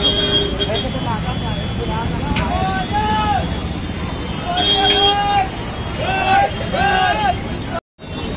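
Busy street crowd and traffic: a steady rumble of motorbikes and vehicles under many voices, with people calling out over it several times.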